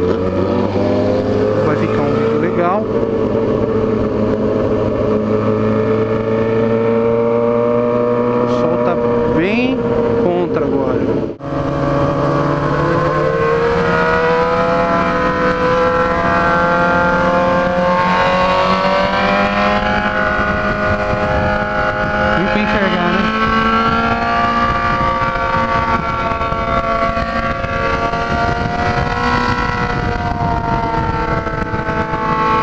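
Yamaha XJ6's 600 cc inline-four engine running at steady cruising revs, heard from the rider's seat with wind buffeting the microphone. The sound drops out for an instant about eleven seconds in; after it the engine note climbs a little, then eases back.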